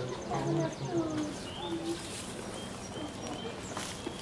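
Faint background voices of people talking, mostly in the first two seconds, with a few short, thin bird chirps over a quiet outdoor background.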